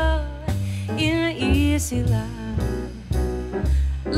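Live jazz: a woman singing a slow melody, accompanied by grand piano, upright double bass and drums.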